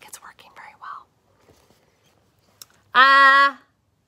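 A woman's voice making breathy, whispered noises for about a second, then a pause, then one short held vocal sound on a single flat pitch about three seconds in.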